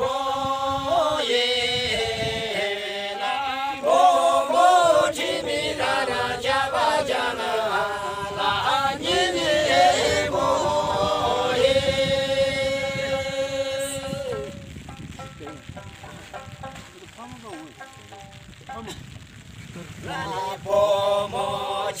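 A group of men and women singing a song together in unison, the phrase ending about twelve seconds in on a long held note. The singing then drops away for several seconds and starts again near the end.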